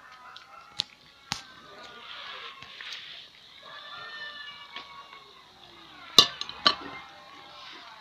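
Metal skimmer knocking against a large cast-iron kazan: two sharp clinks about a second in, then two louder ones a little after six seconds.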